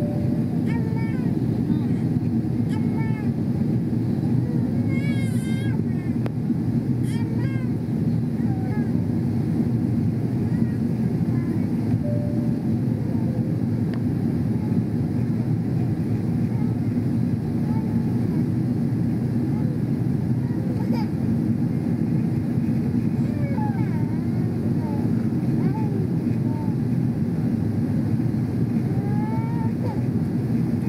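Steady airliner cabin noise during descent, the low rush of airflow and jet engines heard from a window seat. Faint voices of other passengers come through now and then.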